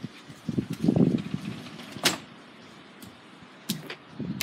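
Sliding glass door pulled shut: a short low rumble as it runs along its track, then a sharp click about two seconds in, with a fainter click near the end.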